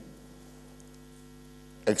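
Steady electrical hum made of several low, even tones, heard in a pause between speech; a man's voice starts again near the end.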